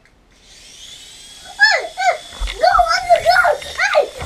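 Small toy drone's motors spinning up into a steady high whine. From about a second and a half in, a child's loud voice repeatedly whoops up and down over it.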